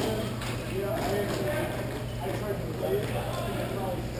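Ice hockey game sounds in a rink: distant voices calling out over the ice, with scattered clicks and knocks of sticks, puck and skates, over a steady low hum.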